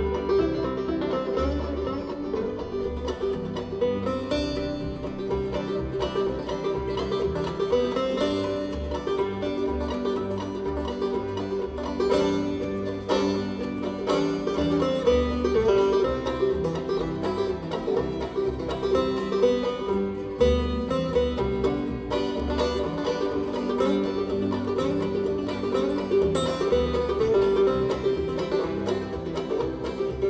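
Bluegrass string band playing an instrumental passage with the banjo prominent, mandolins and acoustic guitar playing along.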